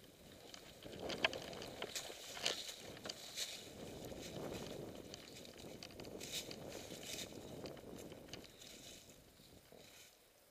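Mountain bike rolling down a dry, leaf-covered dirt trail: a steady rumble of tyres through leaves and soil that builds after about a second and fades near the end, with sharp clicks and rattles from the bike over bumps.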